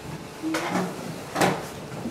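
Two short knocks about a second apart, the second louder.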